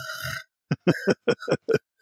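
A person vocally imitating a sleeping monster's snoring: a low, rough snore-like sound for about half a second, then a string of about six short vocal bursts.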